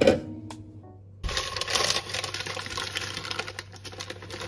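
A knock at the start as a plastic blender jar is set down on the counter, with background music that ends about a second in. Then dense crinkling and crackling of a plastic bag of frozen blackberries being handled and opened.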